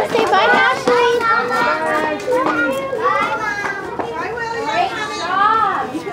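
A group of young children's voices chattering and calling out over one another, high-pitched and overlapping.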